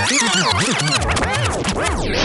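Rewind-style transition sound effect: a jumble of pitched audio warbling rapidly up and down in pitch, like sped-up tape or a scratched record.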